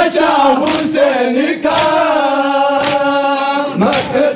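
Group of men chanting an Urdu noha (mourning lament) in unison, with long held lines. A few sharp slaps, typical of matam chest-beating, are heard through the chant.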